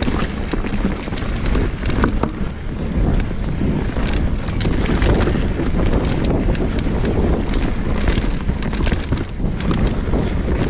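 Wind rushing over an action-camera microphone as a mountain bike rides fast along a dirt trail. Steady tyre noise runs underneath, with frequent short clicks and rattles from the bike over rough ground.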